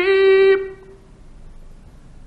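A male voice reciting the Quran in a melodic chanted style, holding one long note that ends about half a second in and dies away. The steady hiss of an old 1950s recording follows.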